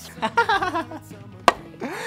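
A short wavering vocal sound, then a single sharp click about one and a half seconds in, fitting the plastic lid of a toy garbage truck snapping shut. Faint steady low tones sit underneath.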